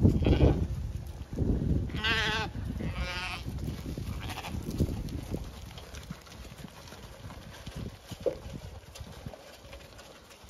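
Zwartbles sheep running in to a feed trough: two quavering bleats about two and three seconds in, amid the thumping and shuffling of the flock, which is loudest in the first second and fades after.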